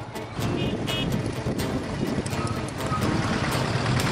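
Road traffic: vehicle engines running, with a few brief high beeps about a second in, over faint background music.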